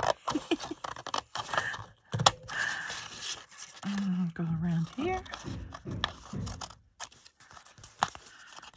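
Scissors snipping through paper glued over thin cardboard, with paper rustling and handling clicks. One sharp click about two seconds in is the loudest sound. A woman's voice murmurs briefly a little after the middle.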